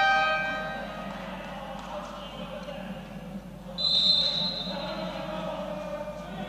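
A referee's whistle for the throw-off: one long high blast about four seconds in, over the low noise of an indoor sports hall. A loud sustained tone carried over from just before fades out in the first second.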